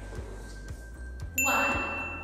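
A single bright bell-like ding about one and a half seconds in, its ring fading slowly, over soft background music with a steady beat.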